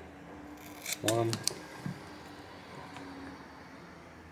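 Scissors snipping a soft 1 mm silicone thermal pad: a few short, sharp clicks in quick succession about a second in.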